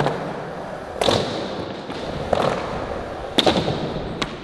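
Skateboard rolling on a concrete floor, with sharp board clacks about a second in, again a little past two seconds, and a close pair near the end.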